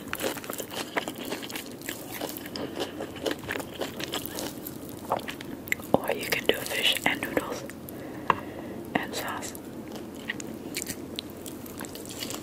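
Close-miked eating and food-handling sounds: many sharp wet clicks and soft rustling as fingers pull apart flaky grilled tilapia flesh and thin rice noodles, mixed with chewing sounds.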